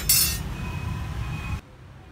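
Metal tongs scraping and clinking against a wire grill rack over a charcoal fire, one short loud scrape at the start, over a steady low rumble that cuts off abruptly about a second and a half in.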